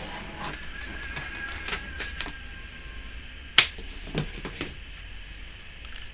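Scattered light clicks and knocks from test probes and their leads being handled at an electrical wiring board, with one sharper click about three and a half seconds in, over a low steady hum.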